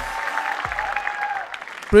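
Audience and judges applauding, dying down about a second and a half in.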